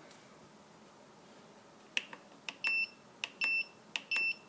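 Turnigy 9X radio transmitter beeping as its menu buttons are pressed: after about two seconds of quiet, a button click, then two short high-pitched beeps about 0.7 s apart, each with a click, and a third beginning at the very end.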